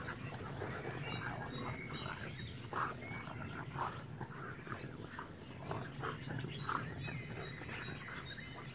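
Two dogs playing rough together, making a string of short vocal noises, two of them louder, about three seconds in and again later. Birds chirp in the background.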